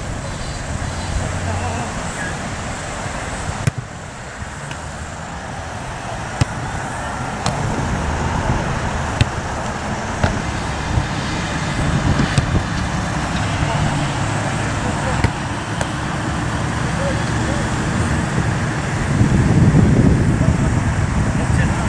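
Outdoor playing-field ambience: a steady low rumble of road traffic with indistinct voices, broken by a few sharp clicks.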